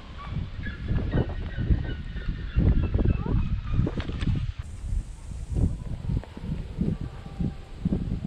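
Wind buffeting the camera microphone in irregular gusts, with faint high bird calls in the first few seconds.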